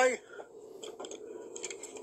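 The end of a man's word, then faint handling noise: a few light clicks and rustling as a handgun is picked up and held up close to the microphone.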